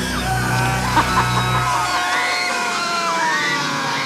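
Horror film score with several people screaming and yelling over it; a low sustained rumble in the music drops out about halfway through.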